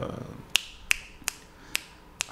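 A man snapping his fingers four times, sharp dry clicks a little under half a second apart.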